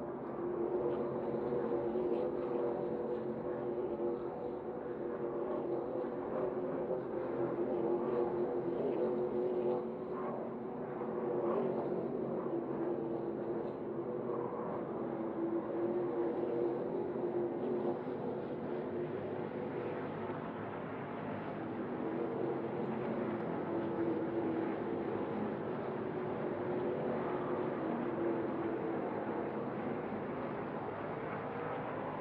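NASCAR Craftsman Truck Series race trucks' V8 engines running at speed. The engine note holds steady with small rises and dips.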